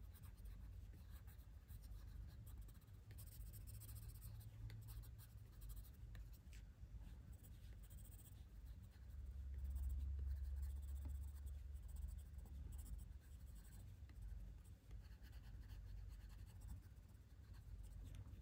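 Faint scratching of a coloured pencil in light strokes on paper: an eggshell pencil going over coloured areas to blend them together. A low rumble swells for a few seconds in the middle.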